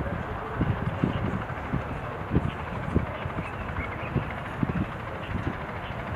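Wind buffeting the microphone outdoors: a steady hiss with short, irregular low rumbles.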